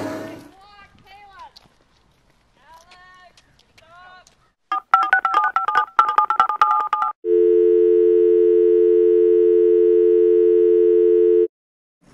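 Brief voices, then a telephone keypad's quick run of touch-tone beeps, followed by a steady dial tone lasting about four seconds that cuts off suddenly.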